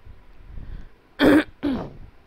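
A person coughing twice in quick succession, the second cough trailing off with a falling voiced tail.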